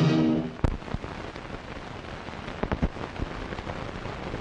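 The closing music's held final chord dies away within the first half second, leaving the hiss of an old film soundtrack with scattered crackles and pops.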